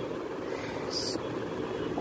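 Steady background hum, with a brief rustle about a second in as the clothes are handled.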